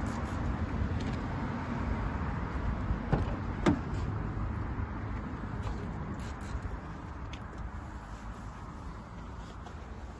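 A car door being opened: two sharp clicks from the handle and latch, a little over three seconds in, the second the louder. A steady low rumble runs underneath.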